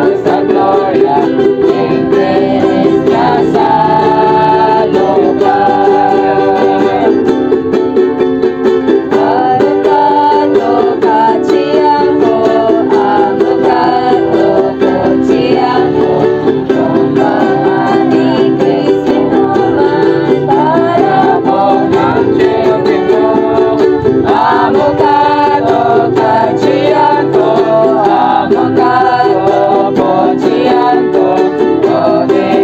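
Several ukuleles strumming chords as accompaniment while a small group sings a hymn in unison.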